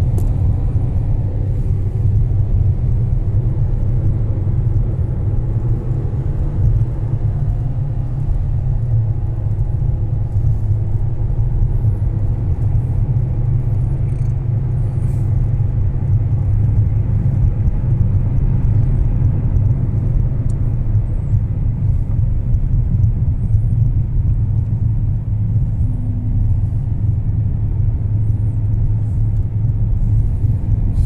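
Steady low rumble of a car driving on an open road, heard from inside the cabin: engine and tyre noise at an even speed.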